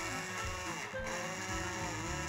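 Hand-held immersion blender motor whirring as it purées cooked carrot, potato and onion in broth in a plastic beaker, with a short break about a second in. Background music plays underneath.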